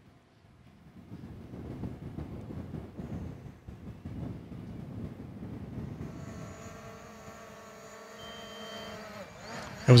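Faint, indistinct talking for the first few seconds. Then, from about six seconds in, a steady whine of several tones at once, typical of a small quadcopter drone's motors and propellers running.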